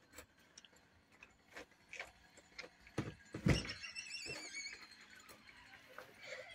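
A few scattered knocks and thuds, then a door hinge squeaking in a wavering squeal for about a second and a half, starting just past halfway.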